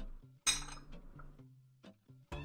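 A metal knife clinks once against a ceramic plate about half a second in, ringing briefly, with a small tap near the end.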